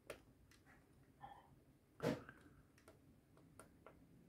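Very quiet, with a few faint ticks and taps of steel tweezers and a tiny plastic part against a plastic model ship's deck as the part is pressed into place; the loudest tap comes about halfway.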